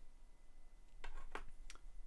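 Three light clicks of small plastic LEGO Technic parts being handled, coming in the second half at about three a second.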